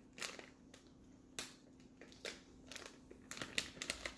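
Plastic sample packet crinkling, with a few light clicks and taps, as the powdered coffee mix is emptied into a BlendJet portable blender jar.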